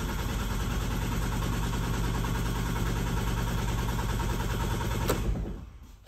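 Volvo V50 diesel engine cranking steadily on its starter without firing, stopping near the end. It will not start because air in the emptied fuel lines keeps diesel from reaching the injection pump.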